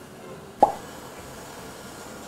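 A single short pop sound effect about half a second in, placed on the cut to the changed outfit, followed by a steady low background hiss.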